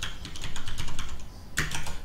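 Computer keyboard typing: a quick run of keystroke clicks.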